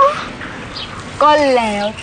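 Speech only: a young woman speaking in a whining tone, a short sound at the start, then a drawn-out phrase whose pitch falls in the second half.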